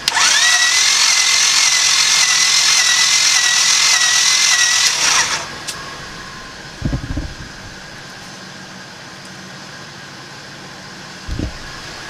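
Starter motor cranking a 1994 Honda Civic's D16Z6 engine for about five seconds without it firing, fuel injectors unplugged, for a compression test. Its whine rises as it spins up, holds steady, then falls away as it stops. Two dull thumps follow later.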